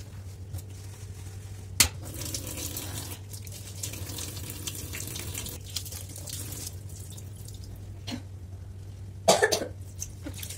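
Water running from a kitchen faucet into a stainless-steel sink while the soapy basin is scrubbed and rinsed, with a sharp click about two seconds in and a steady low hum underneath. A brief loud noise comes near the end.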